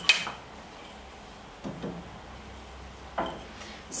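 Dry kindling sticks being stacked in the firebox of a Drolet Bistro wood cook stove: a sharp wooden clack right at the start, then a few softer knocks of sticks set against each other and the firebox.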